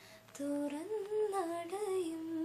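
A woman singing a melody solo, with no accompaniment, her voice stepping and gliding between held notes; it comes in about half a second in after a brief gap.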